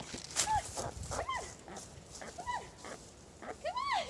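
Canada goose honking: four short honks, roughly a second apart, the last and loudest near the end. Brief rustles come in the first second.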